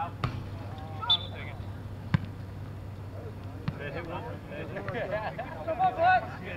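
Four sharp thumps of a soccer ball being kicked, irregularly spaced, the loudest about two seconds in, with players shouting in the distance over a steady low hum.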